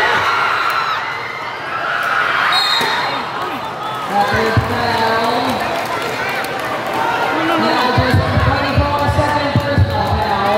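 A basketball bouncing on the court, with several thumps near the end, over the chatter and calls of a large crowd of spectators.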